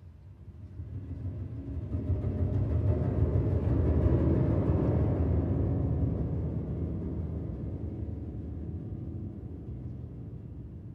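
Low, dark instrumental opening of a choral-arrangement recording: a deep rumbling swell in the bass that rises out of silence, peaks about four seconds in, then slowly eases back.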